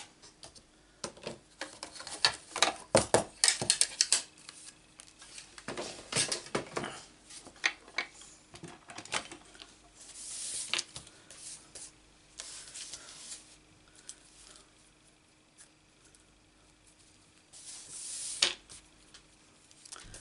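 Clear acrylic die-cutting plates and paper scraps handled on a craft mat: a run of clicks, taps and rustles, with short sliding hisses near the middle and near the end.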